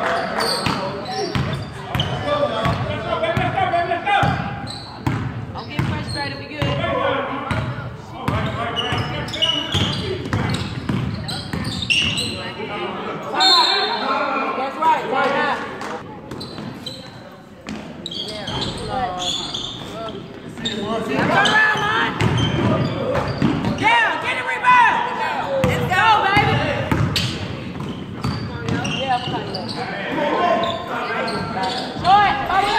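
Basketball game in an echoing gym: a ball bouncing on the hardwood floor in short sharp knocks, mixed with players' and onlookers' shouting and talk throughout.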